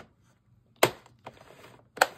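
One sharp click of hard plastic from a circular knitting machine being handled, a little under a second in, against a nearly silent room.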